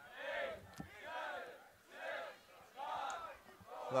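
Distant shouting from people at a lacrosse game: four yells about a second apart, each rising and falling in pitch.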